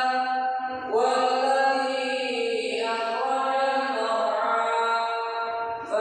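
A man's voice reciting the Quran aloud in a melodic chant through a headset microphone, as the imam leading prayer. Long held notes that glide between pitches, with a short break for breath about a second in and another near the end.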